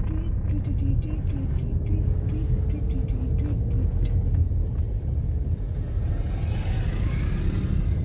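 Low, steady rumble of a car being driven over a rough unpaved road, heard from inside the cabin. A rushing hiss swells up near the end.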